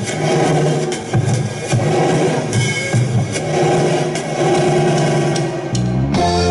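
Rock band playing live on drum kit, electric bass and electric guitar, with loud low notes and scattered drum hits. Near the end the playing shifts into held, sustained notes.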